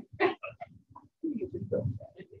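Indistinct voices talking in a room.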